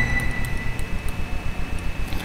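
Background room noise: a low pulsing hum with a steady high whine that fades out early, and a few faint ticks.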